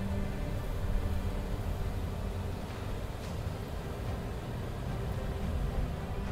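Background music with long held notes, over the low steady rumble of a car driving on the road.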